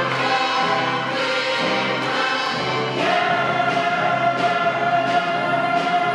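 Musical-theatre cast singing in chorus with a pit orchestra. About halfway through, the voices go to a long held note.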